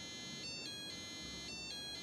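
Small passive piezo buzzer module driven by an Arduino, beeping a steady electronic tone that switches back and forth between two pitches several times a second as the sketch steps through different frequencies.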